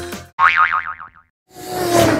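Editing sound effects: a cartoon 'boing', a wobbling springy tone just under a second long, starts suddenly as a music sting fades. After a short silence, a swelling rush of noise begins near the end.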